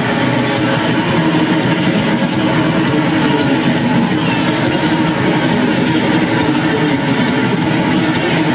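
Rock band playing live at full volume, heard from inside the arena crowd: a dense wall of distorted guitar and bass over drums, with steady cymbal hits.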